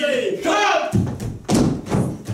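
A voice briefly, then two heavy thumps on a theatre stage about a second and a second and a half in.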